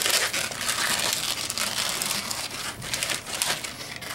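Inflated dark brown 160 latex twisting balloons rubbing against each other and the hands as they are handled and joined together: a dense, crackly rustle.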